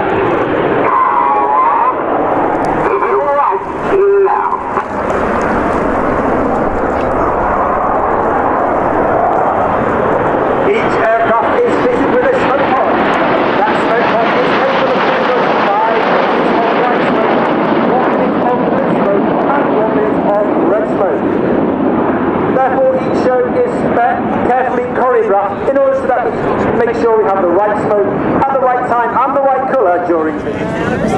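BAE Hawk T1 jet trainers passing low overhead, their Adour turbofan engines giving a steady jet roar that sharpens to its highest pitch about halfway through and then recedes. Voices are faintly heard under the roar.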